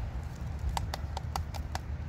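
Irregular light clicks and taps as a plastic car stereo head unit is handled and turned over in the hands, over a steady low hum.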